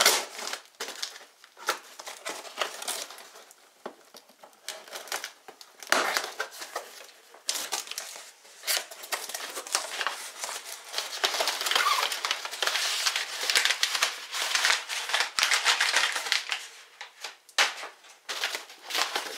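Cardboard box being opened and crumpled brown kraft packing paper crinkling and rustling as it is handled and lifted out. The crackling is sparse at first and gets denser and louder about six seconds in.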